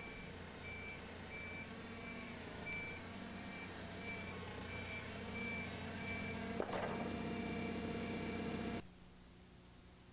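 Propane-powered Toyota forklift engine running as the truck reverses slowly, its backup alarm beeping about twice a second for the first few seconds. About six and a half seconds in there is a single knock as the counterweight meets the concrete wall, and the engine sound cuts off suddenly near the end.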